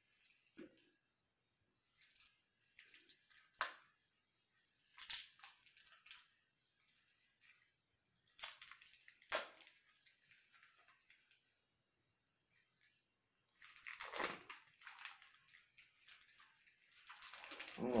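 Plastic wrapping on a pack of game cards crinkling and tearing by hand as it is picked open, in short, irregular bursts with quiet gaps between.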